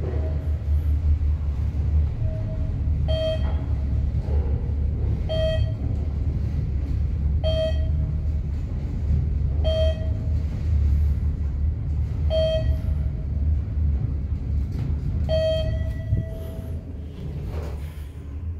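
Traction elevator car riding down with a steady low rumble, while a short electronic beep sounds every two to three seconds as it passes each floor; the sixth beep, near the end, is held longer.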